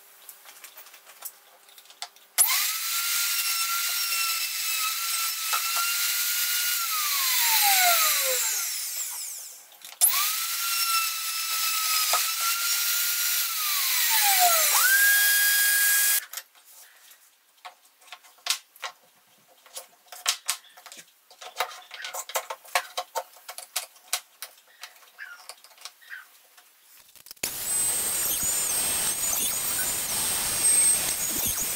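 Plunge router boring holes through a guide-bushed jig, run twice: each time it starts suddenly, runs at a steady high pitch for several seconds, then winds down with a falling whine after switch-off. A stretch of scattered clicks and knocks follows, and near the end a steady hiss with a thin high whistle begins.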